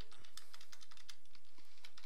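Typing on a computer keyboard: a quick, irregular run of light key clicks, several a second.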